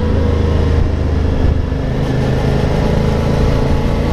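Motorcycle engine running at a steady road speed with wind rush, heard from a camera mounted on the moving bike; a steady low drone with no gear changes or revving.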